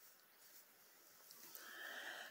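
Near silence: room tone, with a faint rise in level near the end.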